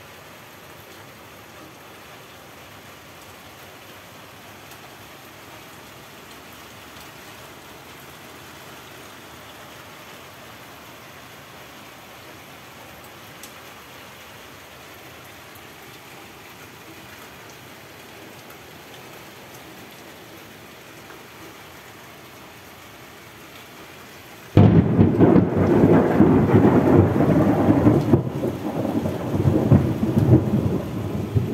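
Heavy rain falling steadily. Near the end, a sudden, very loud clap of thunder breaks in and goes on rumbling.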